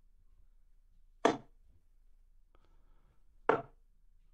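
Steel-tip darts striking a bristle dartboard: two short sharp thuds, about 1.25 s and 3.5 s in.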